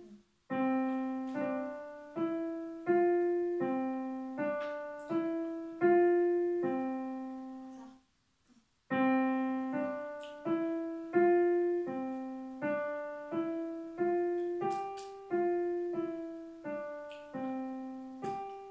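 Electronic keyboard played by a beginner pianist: a slow, simple melody of single notes at an even pace. Each note fades before the next, and the tune breaks off for about a second around eight seconds in before starting again.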